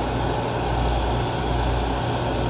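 Steady roar of a glassworking bench torch flame heating a glass bottle, with a constant low hum beneath.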